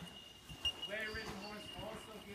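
Horse's hoofbeats on sand arena footing, a series of dull thuds, with a person's voice speaking indistinctly about a second in and again near the end.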